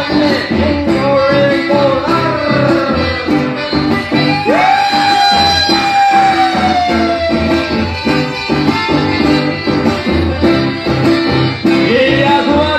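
Live chamamé played on accordion and guitar in a lively dance rhythm, with a long held note that slowly sinks about halfway through.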